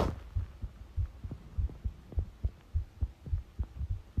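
A human heartbeat picked up by a phone microphone pressed against the chest: regular low thumps, a little under two beats a second. The fast beat is what she calls palpitations while ill with a virus.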